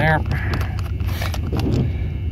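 Screwdriver working the small screws out of a brass cabinet lock housing: light metal scrapes and clicks, over a steady low hum.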